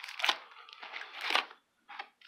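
Foil booster-pack wrappers crinkling and rustling against the cardboard display box as a pack is pulled out, with two louder crinkles, one near the start and one past the middle.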